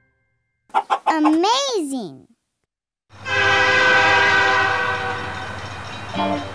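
A short squawk-like sound effect whose pitch swoops up and then down. About three seconds in, a long steady toy-train horn blast begins and slowly fades.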